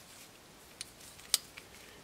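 Titanium flipper knife being worked by hand: a few faint clicks and one sharp metallic click from the blade and its liner lock, about two-thirds of the way through.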